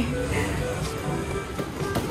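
Arcade game music playing at a moderate level amid the general din of an arcade hall.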